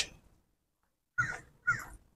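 Two short animal calls, the first a little over a second in and the second about half a second later.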